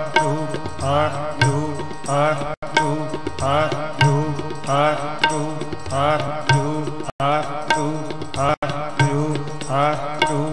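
Gurbani kirtan: voices singing a short phrase over and over, about once a second, with tabla beneath. The sound drops out briefly three times.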